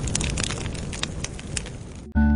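Crackling fire sound effect: a steady hiss dotted with sharp pops, slowly fading away.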